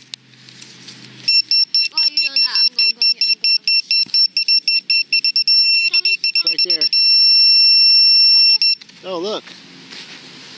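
Handheld metal-detecting pinpointer beeping rapidly in a dug hole, its beeps speeding up and merging into one steady high tone before it cuts off: the probe closing in on a metal target, here a silver coin.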